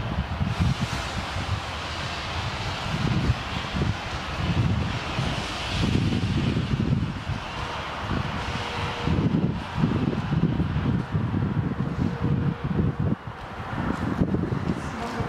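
Handheld smoke grenade hissing steadily as it burns, under gusty wind rumble on the microphone.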